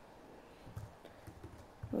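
A few faint, irregular keystrokes on a computer keyboard.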